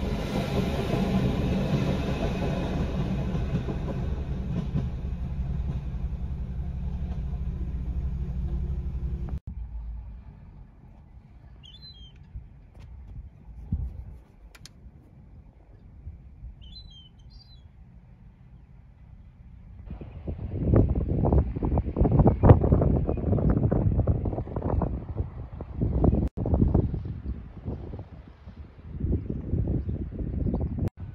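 A train passing a level crossing: a steady low drone that cuts off suddenly after about nine seconds. Then a quiet stretch in which a bird gives two brief high calls. From about two-thirds of the way in, gusts of wind buffet the microphone.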